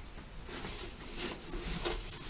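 Cloth camouflage helmet cover rustling and scraping as it is pulled and tucked over a steel M1 helmet shell, in a few short scratchy rustles.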